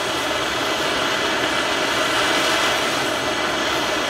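Handheld gas torch burning steadily, a continuous even rush of flame, as its blue flame is held on one spot of a steel AK receiver to bring it to an even cherry red for a spot heat treat.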